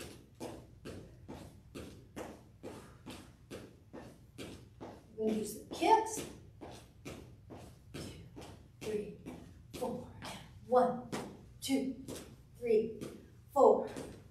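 Sneakered footsteps on a wooden floor from brisk walking in place, an even tapping at about three steps a second.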